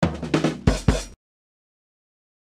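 A short drum-kit sting used as a comedy sound effect: a quick run of drum hits, the last two the heaviest, stopping abruptly just over a second in.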